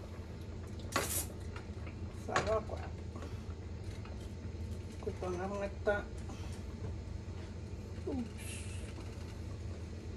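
Kitchen handling sounds over a steady low hum: a sharp rustle about a second in and a short hiss a little over eight seconds in as leaf-wrapped cassava bundles are handled around a steel stockpot, with a few brief murmured words.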